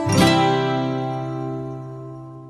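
Background acoustic guitar music: a chord is strummed just after the start and rings out, slowly fading.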